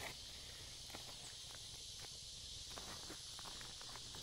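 Faint footsteps and rustling of plants: soft, irregular clicks and scuffs over a steady hiss.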